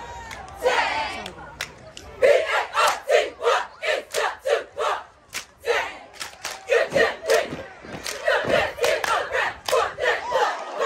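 A cheerleading squad shouting a rhythmic chant in unison, about three shouted syllables a second, starting about two seconds in over general crowd noise.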